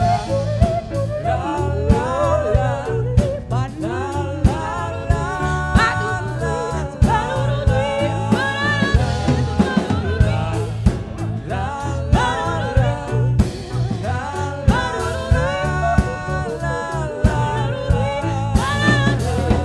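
A woman singing a song with vibrato, backed by grand piano, electric bass guitar and drum kit played live.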